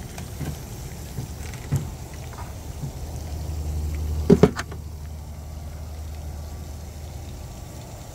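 Tesla Supercharger cable handled and its connector pushed into a car's charge port. It latches with two sharp clicks about halfway through, over a low steady hum.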